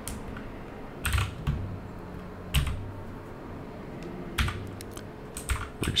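Computer keyboard keystrokes while typing code: a handful of scattered key presses in small clusters, with pauses of a second or more between them.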